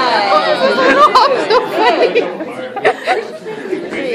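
Several people talking and cheering over one another, with no clear words.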